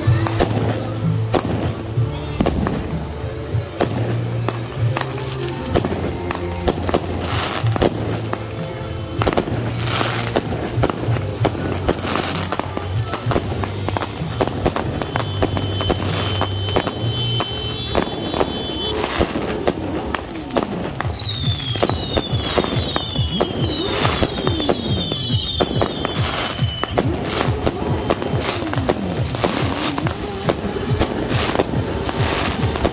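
Firecrackers banging rapidly and irregularly among burning hand-held red flares, with a run of short falling whistles from whistling fireworks in the second half.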